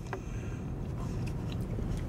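Low steady rumble of a car's cabin, with a faint click near the start and quiet sips of hot tea from a paper cup.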